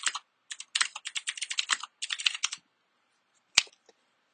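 Typing on a computer keyboard: quick runs of keystrokes over the first two and a half seconds, then a single louder key press, the Enter key, about three and a half seconds in.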